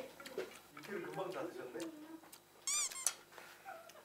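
Soft, brief speech exchange, then a quick high-pitched warbling comedy sound effect of the kind edited into Korean variety shows, about two-thirds of the way in.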